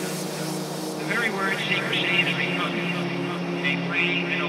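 Electronic dance track: a sustained low synth drone with wavering, bending synth sounds on top, while a faint pulsing high end fades out about halfway.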